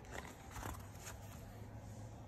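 A page of a picture book being turned by hand: a few faint paper rustles in the first second, over a low steady hum.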